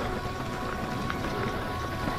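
Ragley hardtail mountain bike rolling fast over a loose gravel trail: tyres crunching on stones and the bike rattling over the rough surface, with wind buffeting the microphone. A faint steady high hum runs through it.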